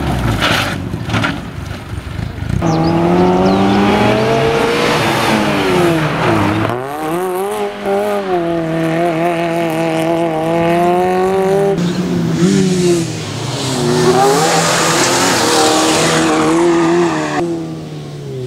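Fiat Seicento rally car's small four-cylinder engine worked hard through a tight stage: revs climb, drop at each shift or lift, and climb again several times, with tyre squeal through the turns.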